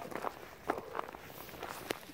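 A person's footsteps in thin snow: a few separate steps, the sharpest near the end.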